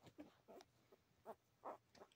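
Young Olde English Bulldogge puppy making four faint, short vocal sounds, spaced across two seconds.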